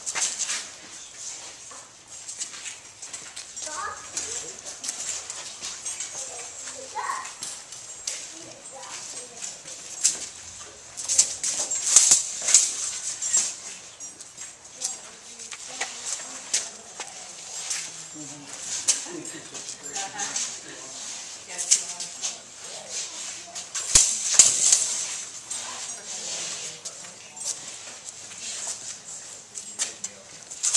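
Rapier blades striking and clicking against each other in irregular exchanges, with two flurries of rapid contacts, over a low murmur of onlookers' voices.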